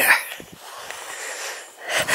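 A woman's long breathy exhale, lasting about a second and a half, out of breath from a steep uphill walk.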